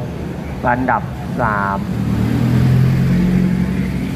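Engine of a race-prepared Mitsubishi pickup truck running as it drives slowly past close by, its low rumble growing louder over the last two seconds.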